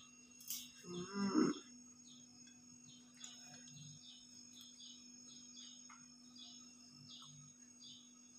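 A short, pitched 'mmm'-like voice sound about a second in, over a steady low hum and faint, evenly repeated high chirps.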